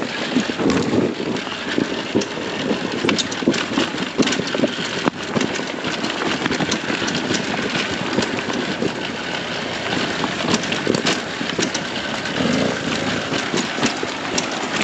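Sherco 300 SE two-stroke dirt-bike engine running steadily while riding a rocky trail, with frequent short knocks and rattles from the bike and some wind noise on the microphone.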